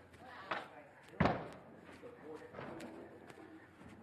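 A sharp bang on wood about a second in, with a lighter knock just before it, from the wooden porch and steps. Faint voices murmur in the background afterwards.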